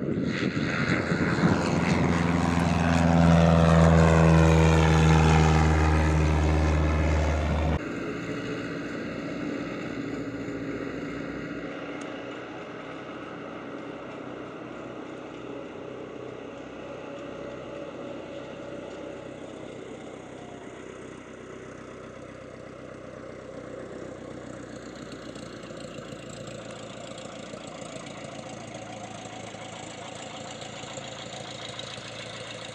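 Cessna 152's four-cylinder Lycoming engine and propeller at full power as the plane climbs out after takeoff and passes close by, loudest about four seconds in. The sound cuts off abruptly near eight seconds in, giving way to the same plane's engine running faintly in the distance as it flies the pattern.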